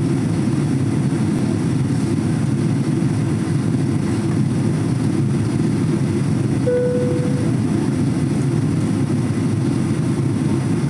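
Steady low roar of an airliner in flight heard inside the cabin: engine and airflow noise. Partway through, a brief single steady tone sounds for under a second.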